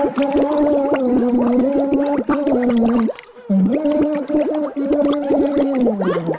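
A man singing a song with his head submerged in a water-filled fish tank. His voice comes through choppy and broken into rapid pulses, in two long, held phrases with a short break about three seconds in.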